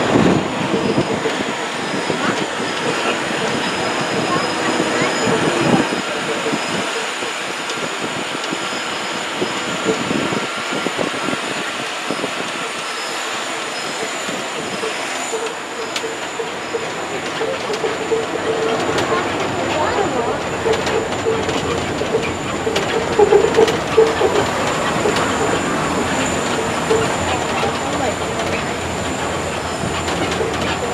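Ride noise from inside a moving open-sided tour tram: a steady rumble of motor and tyres with a steady hum and a faint high whine, and a few louder knocks and bumps in the second half.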